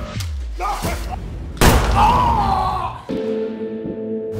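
Film-trailer music and sound design: a low falling sweep, then a sudden loud impact hit about one and a half seconds in with a wavering high tone after it, then a sustained chord of held notes from about three seconds in.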